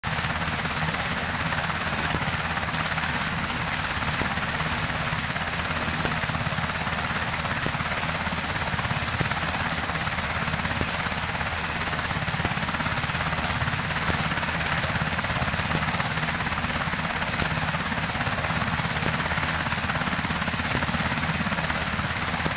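MH-60S Seahawk helicopter's rotor and twin turboshaft engines running steadily as it approaches, hovers and sets down on a ship's flight deck.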